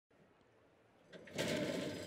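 Horse-racing starting gate springing open about a second and a half in, a sudden clatter with the starting bell ringing on.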